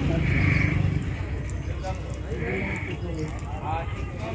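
Voices talking in the background, away from the microphone, over a low rumble that fades about a second in.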